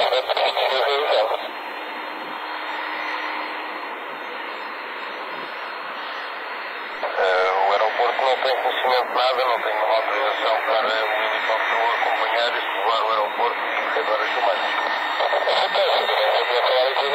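Two-way radio voice transmissions heard through a narrow-band receiver: a voice that cuts off about a second and a half in, a steady radio hiss for roughly five seconds, then talking again from about seven seconds in.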